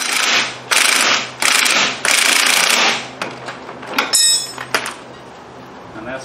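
A DeWalt cordless power driver runs a nylock nut down onto a mower's caster wheel axle in four short bursts, tightening it until the wheel drags. About four seconds in comes a brief metallic clink and ring.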